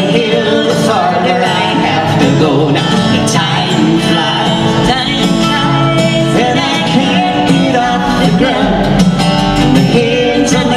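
A folk song played live on two acoustic guitars, with singing over the guitars.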